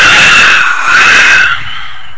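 Film sound effect of a horse-drawn carriage pulling up sharply: a loud, slightly wavering screech over grinding noise that lasts about a second and a half, then drops away.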